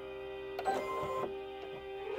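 Baby Lock Soprano sewing machine's presser foot being raised: a brief mechanical whir a little under a second long, starting about half a second in, over soft background music.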